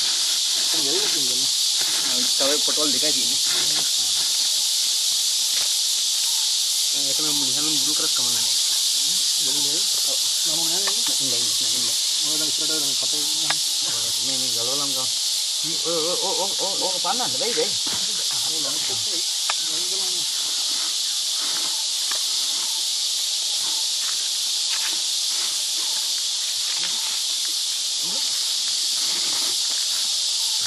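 A steady, high-pitched insect chorus drones without a break, with low voices talking on and off during the first half.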